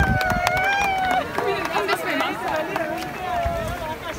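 Excited human voices: a long, high-pitched vocal sound held for about a second at the start, then several voices overlapping in wavering, emotional sounds rather than clear words.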